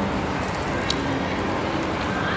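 Steady background noise of a snack shop counter in a busy mall, a constant hum and hiss, with one short click about a second in.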